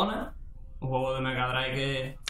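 A man's voice holding a long drawn-out vowel at one steady pitch. It breaks off briefly just after the start and resumes about a second in, like a stretched-out hesitation 'ehhh'.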